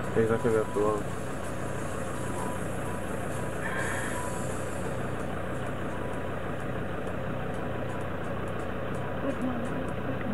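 A steady engine hum, like an idling vehicle, runs under the whole clip, with a short burst of a person's voice in the first second.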